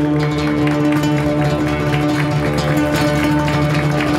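Acoustic guitar playing a Turkish folk tune solo, with quick plucked notes over held low notes.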